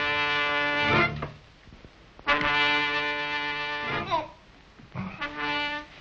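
A brass horn sounding three long held notes on the same pitch, each sliding down briefly as it stops: the first ends about a second in, the second runs through the middle, and the third is shorter and comes near the end.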